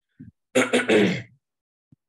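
A man clearing his throat once: a short harsh rasp starting about half a second in and lasting under a second.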